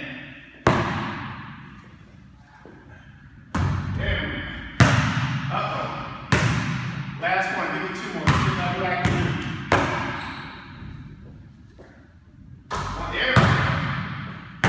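A basketball bouncing on a hardwood court, about nine sharp, irregularly spaced thuds, each ringing on in the bare room's echo.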